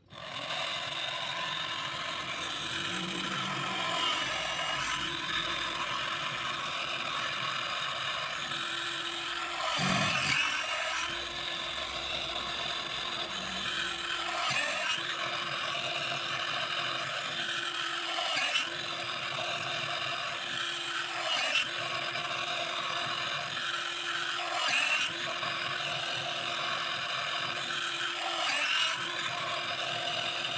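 Small bench drill press motor starts suddenly and runs with a steady whine. A twist bit cuts through thin plastic squares, giving a brief scraping surge roughly every three to four seconds as each hole is bored. The loudest surge comes about ten seconds in.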